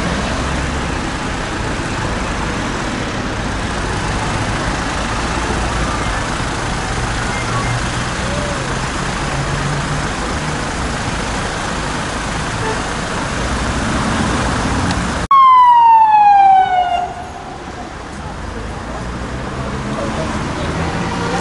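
Street traffic noise with a vehicle engine running. About three-quarters of the way through, after an abrupt cut, a police siren sounds loudly in one falling wail lasting under two seconds.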